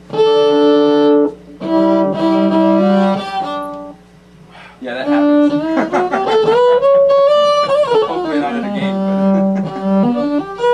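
Electric baseball-bat violin being bowed: a long held note, then a few shorter notes, then a slow slide up in pitch and back down.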